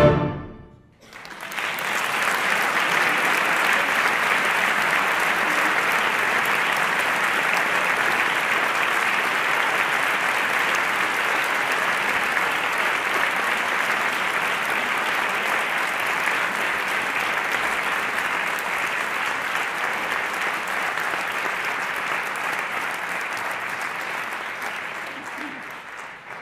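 A wind band's final chord dies away at the very start, then after a brief hush a concert audience applauds, a steady dense clapping that tapers slightly near the end.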